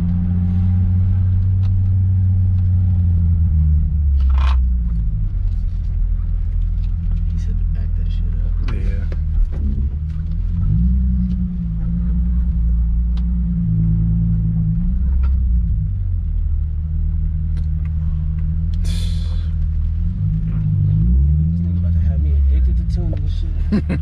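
Nissan 350Z's 3.5-litre V6, freshly tuned, heard from inside the cabin while being driven at low revs. The engine note drops and climbs again several times as gears are changed on the manual gearbox.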